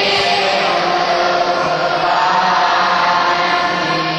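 A group of voices chanting a devotional mantra together in unison, holding long sustained notes.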